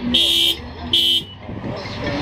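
Electronic beeps in a steady on-off pulse, two short beeps about 0.8 s apart, then the beeping stops a little over a second in.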